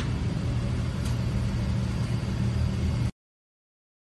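Old Pearson press brake's hydraulic pump motor running with a steady low hum, which ends abruptly about three seconds in.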